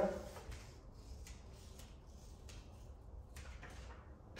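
Faint, soft rustles of a vinyl decal sheet being handled and positioned by hand, over a low steady room hum.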